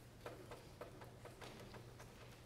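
Near silence over a low steady hum, broken by a quick, irregular run of about seven faint clicks or taps over about a second and a half.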